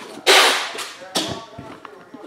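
A cardboard trading-card box (a 2013 Panini Spectra football hobby box) being picked up and handled: a loud sudden swish about a quarter second in and a second, shorter one about a second in.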